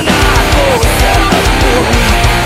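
Electric guitar playing a heavy, distorted rock riff along with a full-band backing track.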